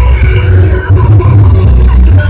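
Loud music with a heavy, pulsing bass, played very loud and near the limit of the recording.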